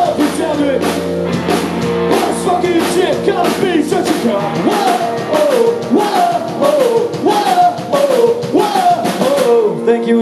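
Loud live punk rock band playing: electric guitars, bass and drum kit with regular drum and cymbal hits, under shouted vocals from several singers.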